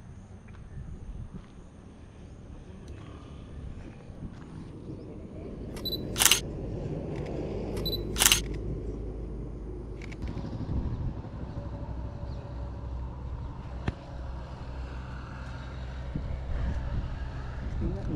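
A Sony A7 III camera's shutter fires twice, about two seconds apart, each a short sharp click. Under it runs a steady low outdoor rumble.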